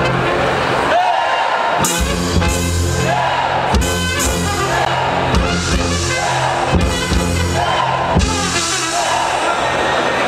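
A live brass-led band playing an upbeat tune: tuba bass line, saxophone, trumpet, drum kit and electric guitar. A short horn phrase repeats about once a second, and the bass drops out briefly about a second in.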